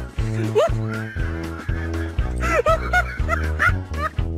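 Background music with a steady beat, over a dog's few short yips and barks in the second half.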